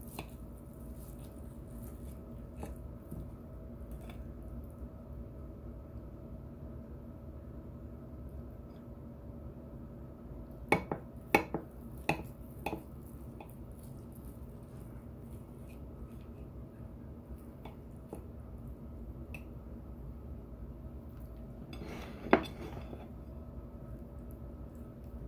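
Kitchen knife cutting through meatloaf on a ceramic plate: a run of four sharp clinks of the blade against the plate about halfway through and one louder clink near the end, over a steady low hum.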